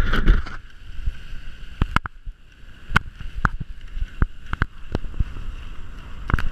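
Steady swishing travel noise from a rig pulled by running dogs over a snowy trail, with scattered sharp clicks and knocks. It is louder and rougher for the first half second.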